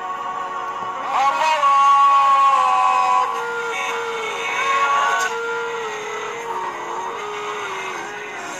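Music with a voice singing long, slowly gliding held notes. The singing swells about a second in and rises again near the middle.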